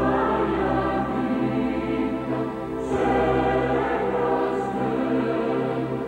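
Choir singing slow, sustained chords, moving to a new chord about three seconds in.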